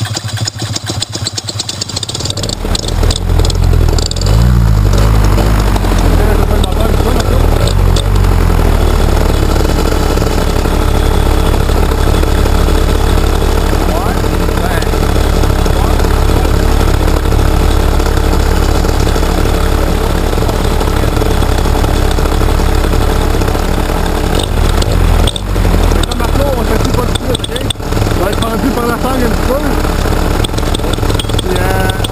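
Paramotor engine running just after being started: it builds up over the first few seconds, then runs steadily and loudly, with a brief dip in engine sound about 25 seconds in.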